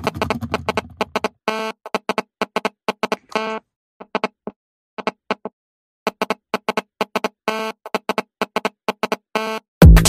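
Electronic future house music: short, separate synthesizer pluck notes playing a sparse melody with pauses. Just before the end, a loud beat with heavy bass kicks in.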